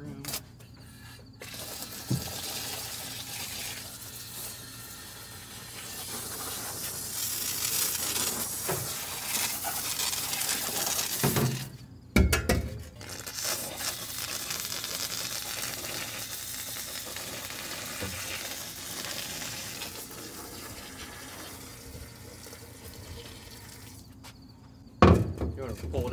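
Water spraying from a hose onto the hot, freshly burned area of a combine, a steady hiss that breaks off briefly about halfway through, with a knock at the break.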